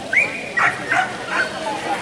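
A dog barking: a short rising call, then three quick high barks over the next second.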